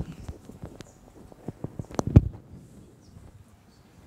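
Irregular knocks and taps on a hard surface. The loudest is a pair of heavy thumps about two seconds in, and it goes quieter near the end.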